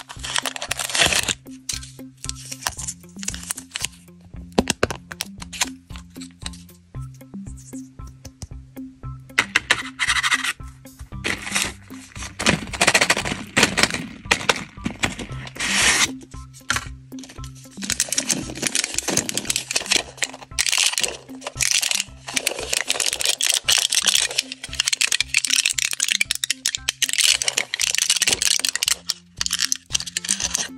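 Close-up crinkling, tearing and sharp crackling of plastic candy wrappers and the foil backing of a chewing-gum blister pack as they are handled and peeled open, in many irregular crackles. Quiet background music with steady low notes plays underneath.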